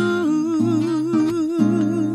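A male voice singing live, holding a long note with vibrato over strummed acoustic guitar chords.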